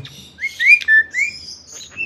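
Crested mynas calling: a string of short whistled notes that glide upward in pitch, followed by higher, thinner chirps.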